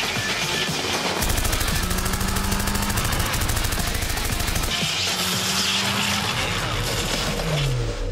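Sound-designed rapid machine-gun fire from an aircraft-mounted gun, a continuous burst of about three and a half seconds starting a second in, over an orchestral-style film score. Low tones slide downward near the end.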